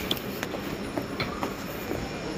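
Railway station noise: a train's steady running and wheel noise, with a few knocks of footsteps on the stairs.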